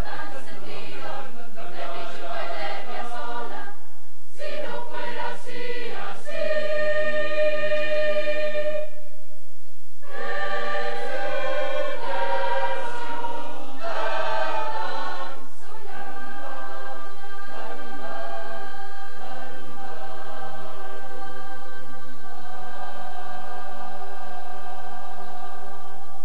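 A large school choir singing held chords in several parts, pausing briefly about four seconds in and again for about a second near the middle. The sound is a dubbed VHS tape recording.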